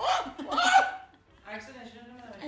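People laughing: two short bursts of laughter in the first second, then fainter voices.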